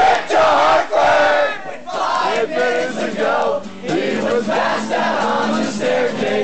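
A crowd of people loudly singing and shouting the lyrics of a folk-punk song along with the band, many voices together over the live music.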